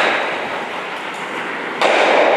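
Stocks sliding on an asphalt stock-sport lane: a rushing scrape that starts suddenly and fades over the first second. A second sudden scrape begins near the end.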